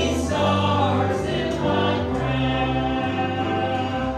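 A gospel song sung into a microphone over accompaniment with choir-like voices, long held notes over a steady bass.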